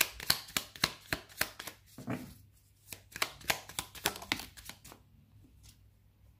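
A deck of oracle cards being shuffled by hand, a quick run of crisp card clicks and slaps, several a second, that stops about four and a half seconds in.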